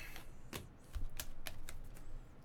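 A stack of 2018 Topps Finest baseball cards being handled and flipped through by hand, the stiff card edges making a scattered string of light clicks and taps.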